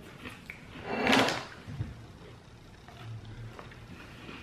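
Quiet chewing of crisp sandwich cookies, with one louder rough scraping sound about a second in and a soft knock shortly after.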